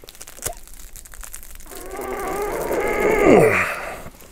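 A man's strained groan of effort that builds from about halfway in and drops sharply in pitch near the end, as he pulls hard on a fastened hook-and-loop strap that holds.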